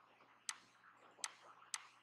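Computer mouse button clicking three times: short, sharp single clicks, the first about half a second in and the next two close together near the end.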